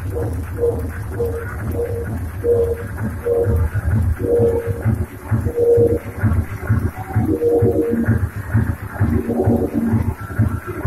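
Live electronic dance music played on hardware drum machines and a pad sampler over a club sound system: a deep pulsing bass under a short synth note that repeats about every half second, with more notes joining in the second half.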